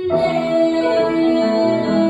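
A woman singing a Bulgarian pop ballad, holding one long note, with an upright piano accompanying her.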